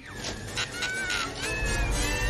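Horror film soundtrack: thin, wavering wails and whistles over a low rumble that swells about halfway through.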